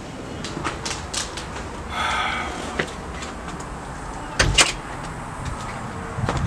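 A door squeaks briefly about two seconds in, then shuts with two sharp knocks a little past four seconds, among light clicks and handling knocks.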